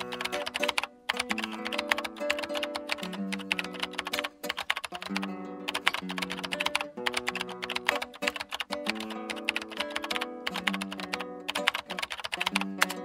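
Rapid key-typing clicks, many a second, from a typing sound effect, over music with held notes.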